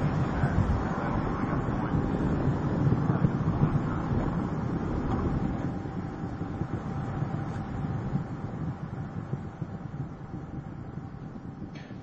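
Steady rumble and rushing noise of the space shuttle Atlantis climbing under rocket power, fading gradually as it climbs toward solid rocket booster separation.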